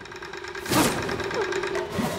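Film sound effects of a mechanical trap springing: a steady low whirring with a fine rapid rattle, and one sharp whoosh about three-quarters of a second in as something flies past.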